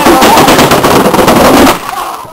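A round board carrying a rider rattles down concrete stairs, its bottom striking step edge after step edge in a loud, rapid clatter that stops about a second and a half in as it reaches the bottom.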